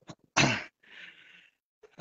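A man sneezes once, loud and sudden, followed by a softer breathy hiss lasting about half a second.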